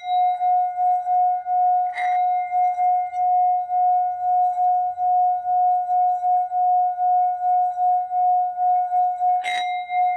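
Tibetan singing bowl sung by a mallet rubbed around its rim: one steady, pulsing tone that holds throughout. The mallet knocks against the rim about two seconds in and again near the end.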